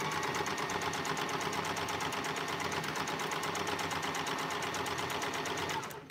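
Electric domestic sewing machine running at a steady speed with a rapid, even stitching rhythm as it sews a seam. It stops just before the end.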